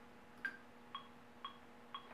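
Quiet metronome click track counting in a take: four short, evenly spaced clicks, about two a second, the first pitched differently from the other three.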